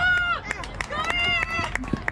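A person yelling twice at a high pitch, each shout held for about half a second: once at the start and again about a second in.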